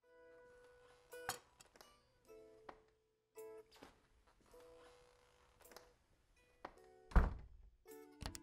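Film soundtrack of short, stepping musical notes broken by sharp clicks and knocks. The loudest is a heavy thunk about seven seconds in.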